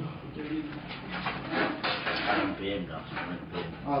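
Quiet, indistinct talking.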